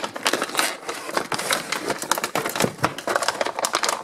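Cardboard toy box being opened by hand and its plastic packaging tray slid out, a dense run of crinkles, clicks and scrapes.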